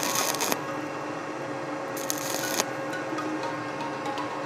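Stick (arc) welding: the electrode's arc crackling and sputtering steadily, with stronger hissing spells at the start and about two seconds in.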